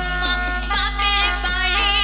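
Women singing a Sylheti dhamail song through a microphone and PA, with wavering vibrato, held instrumental tones and a drum struck about every three-quarters of a second, over a steady low electrical hum.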